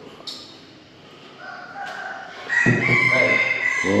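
A rooster crowing: one long call that begins about a second and a half in and climbs in steps to a held high note near the end.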